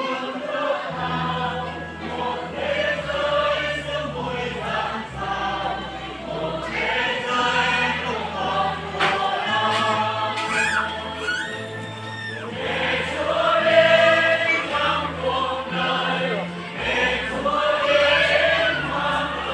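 A choir singing a Christian hymn over instrumental accompaniment with sustained bass notes that change every second or two, amplified through loudspeakers.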